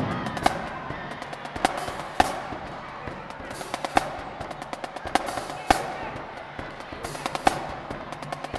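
Marching drumline playing a sparse, broken-up passage: sharp snare cracks every second or so, with quick runs of light stick taps between them, ringing off the gymnasium walls over crowd chatter.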